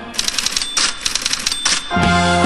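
The band cuts out for a burst of rapid mechanical clicking and clatter, a sound effect set into the rock track, with a few louder rattling bursts among the clicks.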